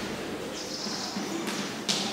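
Chalk scratching on a blackboard as a word is written, with a couple of sharp taps near the end.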